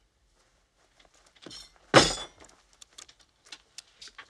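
A jam container being handled and opened: small clicks and taps, then one sharp clank with a brief ringing about two seconds in.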